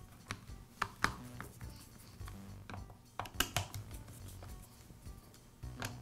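Screwdriver loosening screws in a string trimmer's plastic trigger housing: scattered light clicks and taps of the tool against the screws and plastic.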